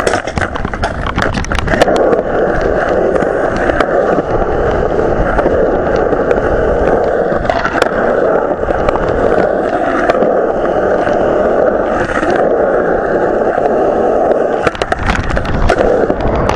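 Skateboard wheels rolling steadily across a concrete skatepark bowl, a continuous rolling rumble. Sharp clattering knocks of the board come in the first couple of seconds and again near the end.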